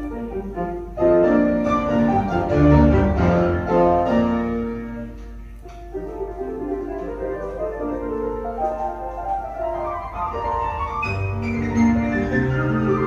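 Classical piano music with strings, played from a vinyl record on the turntable, with a brief softer passage about halfway through.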